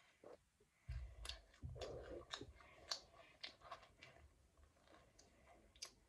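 Faint chewing and small mouth clicks as a child eats an air-fried hotteok, with a few soft low thumps in the first half.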